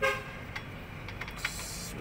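A short horn-like honk right at the start, over a steady low hum, then a brief hiss near the end.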